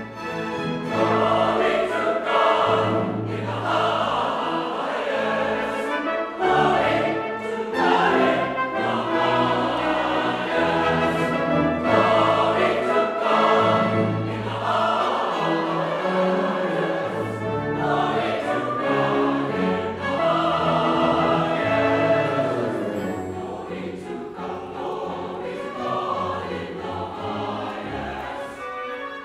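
Large church choir singing with an orchestra of strings and brass. The music swells in about a second in and eases off slightly near the end.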